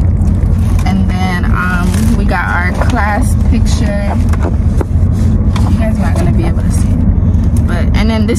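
Steady low rumble inside a car cabin, with plastic packaging crinkling and papers rustling as they are handled.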